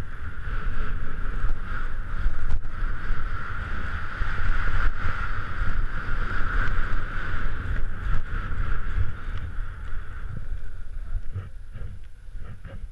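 Skis hissing and scraping over wind-crusted snow on a downhill run, with wind rumbling on the microphone of a GoPro Hero3. The hiss fades a little before the end as the skier slows.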